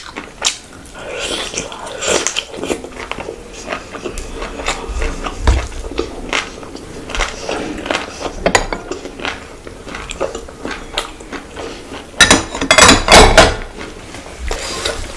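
Close-miked eating by hand: chewing and wet mouth smacks, with rice and curry squelching in the fingers. A denser, louder run of wet clicks and smacks comes near the end.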